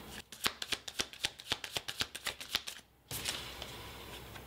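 Tarot deck shuffled by hand: a quick run of sharp card flicks, about ten a second, that stops about three seconds in, followed by a faint rustle of cards.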